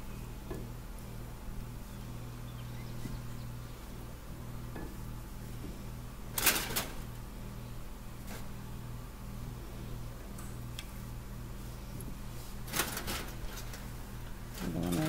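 Kitchen handling sounds: a sharp knock about six and a half seconds in and a quick run of clicks and knocks near the end, over a steady low hum.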